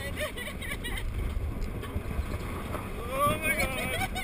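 Tilt-A-Whirl car spinning on its platform, with a steady low rumble and wind buffeting the microphone. Riders' voices cut through, with a rising, wavering whoop near the end.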